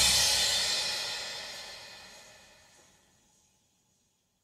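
Drum-kit cymbals ringing out after the song's final hit and fading away steadily, dying out about three seconds in.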